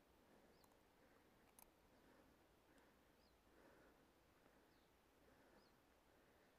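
Near silence: faint outdoor ambience with a small high chirp repeating every second or two, and a couple of tiny clicks about one and a half seconds in.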